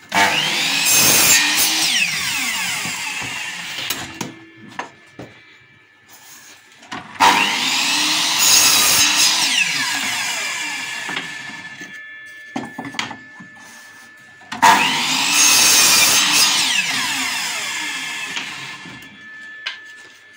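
Miter saw making three cuts through wooden stretcher-frame strips: each time the motor starts with a sudden burst, the blade runs through the wood, then it spins down with a falling whine over several seconds. A thin ringing from the spinning saw blade hangs on between cuts.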